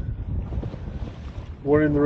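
Wind buffeting the microphone aboard a sailboat under way: an uneven low rumble, with a man's voice starting near the end.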